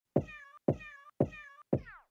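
Hip-hop beat intro: four evenly spaced kick-drum hits, about two a second, each with a short pitched sample on top; the pitch of the fourth one slides down.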